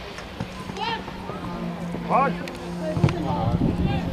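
Shouts and calls from players and spectators at an outdoor football match, with a few sharp thumps of the ball being kicked, the loudest about three seconds in.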